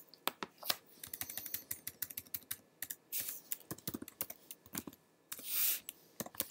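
Computer keyboard typing: a run of quick key clicks with short pauses, and a brief hiss a little after five seconds in.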